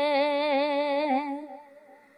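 A woman's voice holding one long note of a Muharram salaam recitation, with a wavering vibrato, fading away about a second and a half in.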